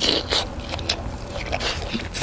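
A person biting into a piece of tocino, Filipino sweet cured pork, and chewing it: a bite at the start and another about a third of a second in, then a string of short clicks and smacks of chewing.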